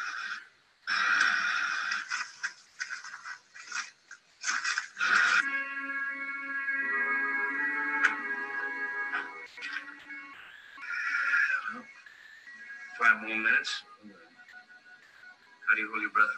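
Soundtrack of an old western TV episode played through a webinar: a run of short noisy bursts, then held orchestral music notes from about the middle, then a few more short bursts.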